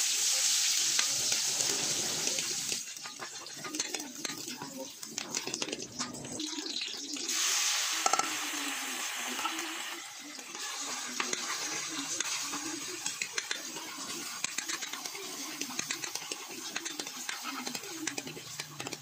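Garlic and onion sizzling in hot oil in a stainless steel wok, with a spatula scraping and clicking against the pan as it stirs. The sizzle flares loudly at the start and again about seven seconds in, as fresh ingredients such as ground meat hit the oil.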